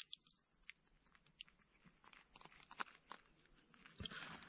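Near silence broken by faint, scattered small wet clicks and drips as a coffee bag is lifted out of a mug of hot coffee and squeezed against the rim, with a few more of them in the second half.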